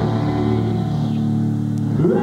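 Live rock band's guitars holding one sustained chord that rings steadily, without singing, before the full band comes back in right at the end.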